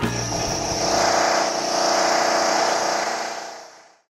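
Closing production-company logo sting: a steady mechanical rush with a low hum beneath it, swelling about a second in and fading out near the end.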